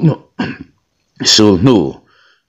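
Speech only: a voice narrating a story in Mizo, in short phrases with pauses between them.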